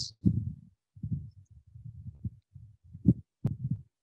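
A stylus writing on a tablet, heard as irregular soft low thuds. Two sharper taps come a little after three seconds in.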